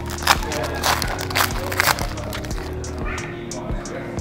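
Foil wrapper of a trading-card pack crinkling and tearing as it is ripped open, with several sharp crinkles in the first two seconds, over steady background music.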